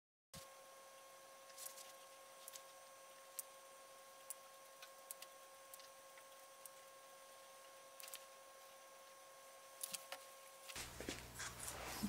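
Near silence: faint room tone with a steady faint hum and a few soft ticks, growing a little louder near the end.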